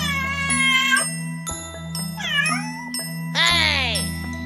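A cat meowing three times over a light instrumental backing track with a steady bass line. The last meow is the longest and falls in pitch.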